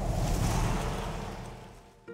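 Whoosh transition sound effect: a rush of noise that fades away steadily over about two seconds.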